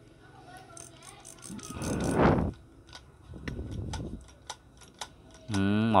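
Olympic spinning fishing reel being handled and turned: small clicks and rattles of the mechanism, and a whirr that swells and fades as the rotor turns about two seconds in and again a little later. The reel turns very smoothly.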